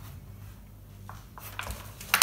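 Faint rustling and light knocks of plastic-wrapped meat packs being handled and set down, over a low steady hum.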